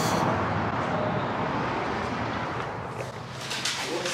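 Steady outdoor background noise like distant traffic, with a sharp click right at the start and a few light knocks near the end.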